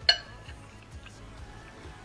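A metal spoon clinks once against a ceramic bowl with a short ring, then makes faint small clicks and scrapes as it stirs pretzel sticks soaked in milk.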